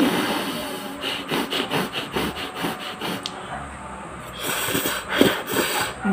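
Close-miked eating of instant noodles: a slurp as a forkful goes in, then rhythmic chewing at a few chews a second, with a louder hissing stretch of eating noise near the end.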